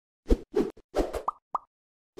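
Logo-animation sound effect: a quick run of about five short plopping pops, several of them sweeping up in pitch.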